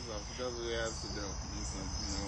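Crickets chirping steadily in the background of an evening yard, with a brief faint voice about half a second in.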